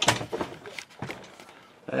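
A sharp knock, then a few fainter clicks and knocks over the next second, fading to a quiet small room.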